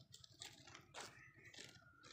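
Near silence with a few faint, scattered clicks and rustles, about three in two seconds.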